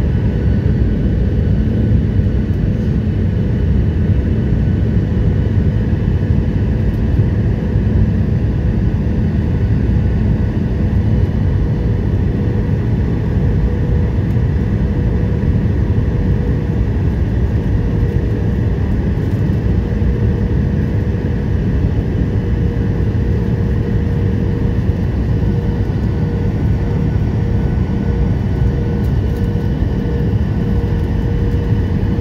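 Jet airliner cabin noise at a window seat beside the engine as the plane comes in to land: a steady deep rush of engine and airflow noise with a few steady whining tones over it.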